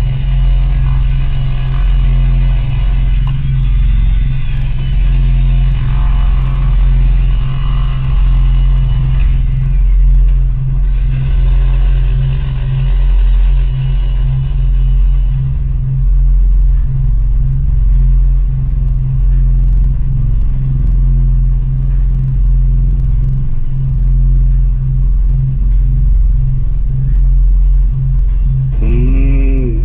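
A loud, steady low rumbling drone with faint, steady higher tones above it.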